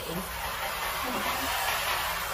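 Water spraying steadily from a garden hose spray nozzle into a plastic tub, hissing as it strikes the tub floor and the pooling water.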